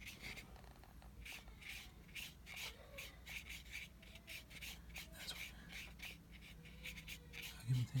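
Watercolor brush bristles scratching on paper in short, quick strokes, about three a second, faint. A brief voice and laugh comes in near the end.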